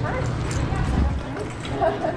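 Grocery store background noise: indistinct voices over a steady low rumble.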